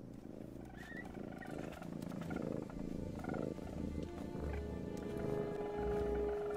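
A cat purring low and steadily in a cartoon soundtrack, under quiet background film music, with a held note coming in near the end.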